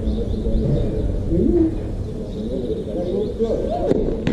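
Outdoor ambience of low wind rumble, with doves cooing and faint distant voices. A single sharp hit near the end.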